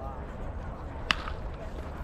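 A baseball bat hitting a pitched ball about a second in: one sharp crack with a short ringing after it.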